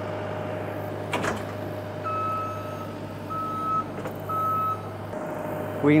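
New Holland compact track loader's engine running steadily while its back-up alarm beeps three times, each beep about half a second long: the machine is reversing. A single knock sounds about a second in.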